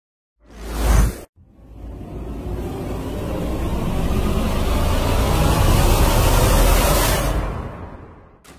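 Channel-intro whoosh sound effects: a short swelling whoosh that cuts off abruptly about a second in, then a long noisy swell that builds for several seconds and fades out near the end.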